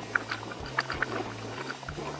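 Jeep Wrangler JL driving a trail, heard from inside the cabin: a steady low engine drone that shifts pitch slightly a few times, with scattered light clicks and rattles.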